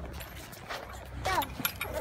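A faint child's voice calls out briefly about a second and a half in, over a steady low rumble.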